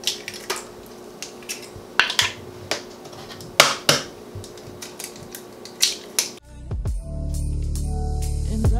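Eggs tapped and cracked on the rim of a mixing bowl: a string of sharp clicks and cracks as two eggs are broken in and the shells handled. Background music comes in a little over six seconds in.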